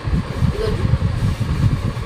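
A continuous low rumble of background noise, with one short spoken word about half a second in.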